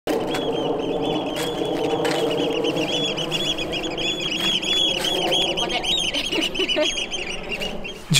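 A dense chorus of many birds calling over one another, short high calls overlapping with lower honking calls. It goes on steadily and thins slightly near the end.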